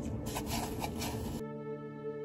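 Light rustling of dried flower petals being handled in a paper cup, then background music with held notes cuts in abruptly about one and a half seconds in.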